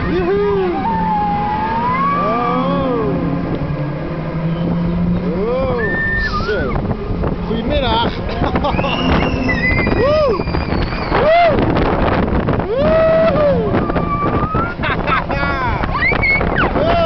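Riders on a thrill ride that turns over the top, shrieking and whooping in short rising-and-falling cries that come more often in the second half. Under them runs a steady low hum from the ride's machinery.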